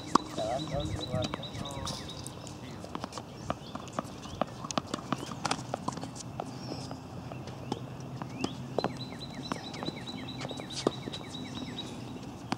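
Tennis balls being struck by rackets and bouncing on a hard court: irregular sharp pops spread through the whole stretch. A faint steady high tone comes and goes, and a voice is faintly heard about half a second in.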